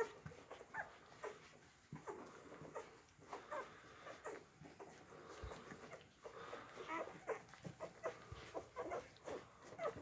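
Eight-day-old golden retriever puppies giving many short, faint squeaks and whimpers as they nurse.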